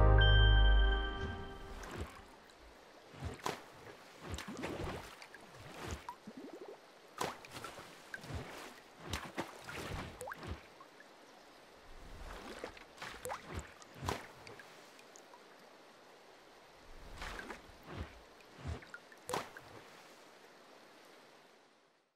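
A short logo jingle with a deep bass note that fades out within the first two seconds. Quiet, irregular drip-like plops and soft clicks follow for the rest.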